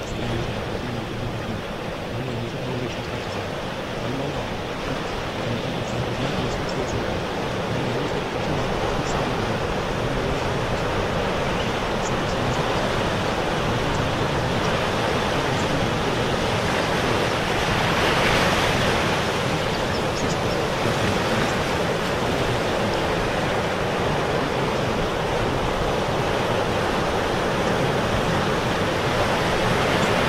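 Ocean surf: a steady wash of waves that swells gradually and is loudest a little past the middle.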